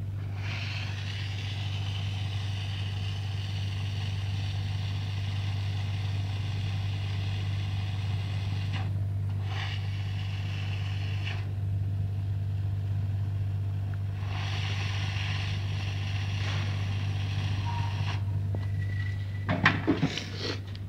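Hot-air SMD rework station blowing, an airy hiss over a steady low electrical hum. The hiss drops out twice, briefly about 9 seconds in and for about three seconds a little after halfway, and stops about 18 seconds in while the hum carries on.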